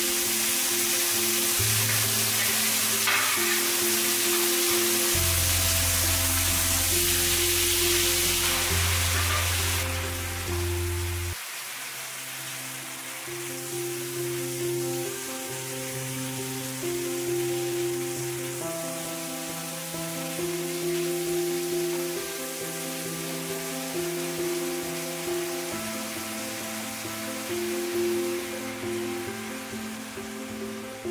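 Salmon fillet frying in oil in a nonstick wok: a loud sizzle as it goes into the hot oil, easing off after about ten seconds into a quieter sizzle. Background music plays throughout.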